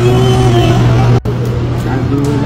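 Indistinct voices and chatter over a steady low hum, with a brief dropout just after a second in.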